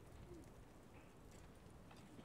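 Near silence: room tone with low hum, and one very faint, short sound about a third of a second in.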